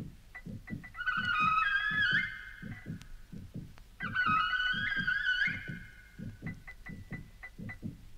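Late-1960s electronic tape music: a steady pulse of low beats with faint high ticks, overlaid twice by a loud, bright cluster of wavering high tones, about a second in and again about four seconds in.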